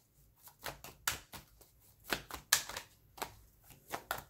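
A tarot deck being shuffled by hand: a string of soft, irregularly spaced card snaps and taps.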